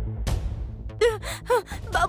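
A woman's short pained cries, three quick gasping sounds about half a second apart starting about a second in, over tense background music with a low drone.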